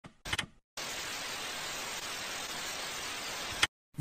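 Steady static-like hiss from an intro sound effect. It starts abruptly after a short burst and cuts off suddenly with another brief burst near the end.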